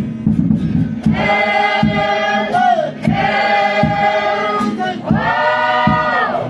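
A group of women and men singing together as a choir, in three long held phrases, the last one falling in pitch at its end.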